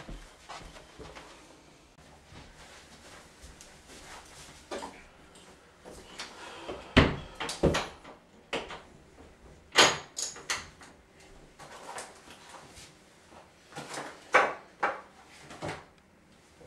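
A string of knocks, clunks and clicks from someone moving about a small room and handling things, like a door, cupboard or drawer being opened and shut. The loudest knocks fall a little under halfway through, around two-thirds of the way through and near the end.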